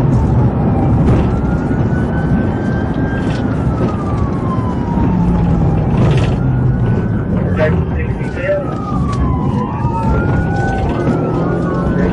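Police car siren wailing in slow rising and falling sweeps, heard from inside the pursuing patrol car over heavy road and engine rumble. Near the end a second wail overlaps it.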